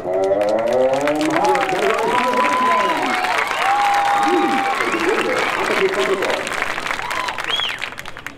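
Crowd cheering, shouting and clapping, breaking out suddenly and dying away near the end.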